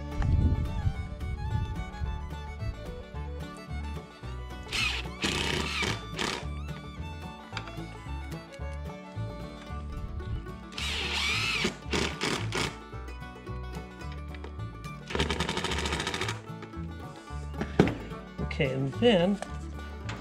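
A cordless driver running screws into a steel door hinge in three short bursts, its motor pitch gliding as each screw is driven, over background guitar music.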